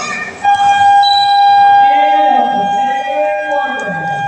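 Gym scoreboard buzzer sounding one long, steady tone that starts about half a second in and is still held at the end, over the voices of players and spectators.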